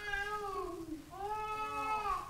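A small child's voice from the congregation: two drawn-out wordless cries, the first falling in pitch, the second longer and level.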